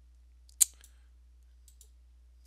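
A single sharp computer-mouse click about half a second in, then a few faint ticks.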